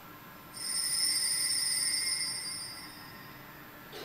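Altar bell ringing with clear, high tones, starting about half a second in and fading out over about two seconds. It is the bell rung at the consecration of the chalice, as the priest bows at the altar.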